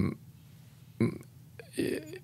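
A man's brief throaty hesitation noises while pausing mid-sentence: a short guttural sound about a second in and a low 'uh' near the end, with quiet room tone before them.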